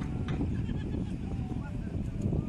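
Wind buffeting the microphone at the seashore: a dense, unsteady low rumble, with a few faint short high chirps above it.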